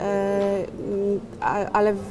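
A woman's voice holding a long, level hesitation sound, then a shorter one, before she resumes speaking near the end.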